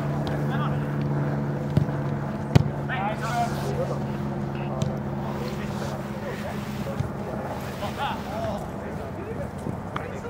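Scattered distant shouts and calls from players on a soccer pitch over a steady low mechanical hum. A single sharp knock about two and a half seconds in is the loudest moment.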